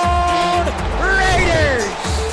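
Background music with a steady low beat. A held note cuts off just over half a second in, followed by a voice sliding up and down in pitch.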